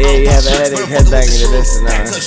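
A hip hop track playing loudly: a rapped vocal over a beat with deep 808-style bass hits that slide down in pitch.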